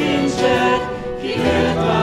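Church worship group singing a hymn together, mixed men's and women's voices, accompanied by acoustic guitar and wind instruments.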